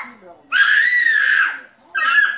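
A toddler's loud, high-pitched squeal of excitement, rising and then falling in pitch, lasting about a second from half a second in; a second short squeal starts right at the end. Faint TV commentary runs underneath.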